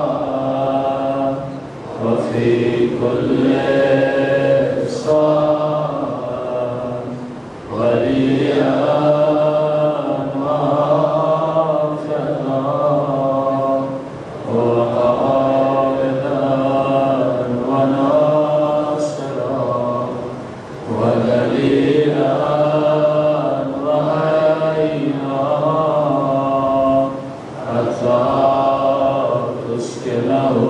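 A man's voice chanting a supplication in long melodic phrases of about six seconds each, with short breaths between them, through a microphone and PA.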